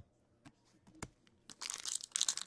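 Foil trading-card pack wrapper crinkling as it is handled and starts to be torn open, beginning past the halfway point and getting louder, after a couple of faint taps of cards being set down.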